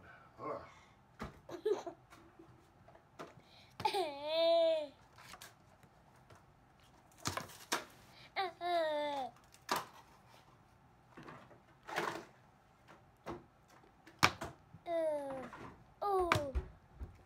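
Toddler babbling in a few drawn-out, high-pitched vocal calls, mostly falling in pitch, about four, eight and fifteen seconds in. A few short knocks and clicks sound in between.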